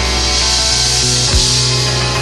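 Jazz band playing live on piano, electric bass and drum kit, with steady low bass notes under a bright, dense wash. A single low drum hit stands out a little past halfway.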